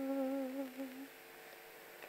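A woman's unaccompanied voice holding the last sung note of a Hindi song phrase, wavering slightly, then fading out about a second in, leaving faint room tone.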